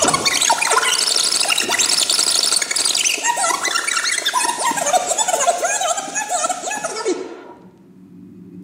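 Joystick-controlled sampler switched into 'hyperdrive': its samples play back twice as fast, a loud, dense, high-pitched garbled jumble that stops about seven seconds in.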